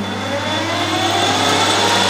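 Belt-driven metal lathe starting up after a belt change to a faster speed range, the motor and spindle whining upward in pitch as the chuck spins up toward 1200 rpm.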